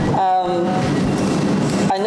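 A short hesitant voice sound at the start, then a steady loud hiss of room noise with a low hum underneath, until speech resumes at the end.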